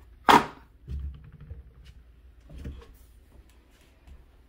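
A single short, sharp sound about a third of a second in, then soft low thumps of the camera being handled and carried.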